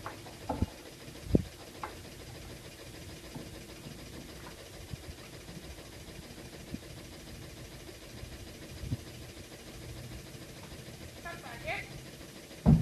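A few dull thumps, the loudest about a second and a half in, over a steady low hum.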